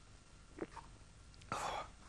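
A quiet stretch with a faint tap, then a short breathy whisper near the end.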